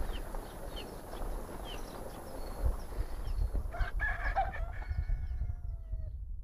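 A rooster crows once, starting a little under four seconds in, its last note held long and falling away. Before it, small birds chirp in short repeated notes over a low rumble.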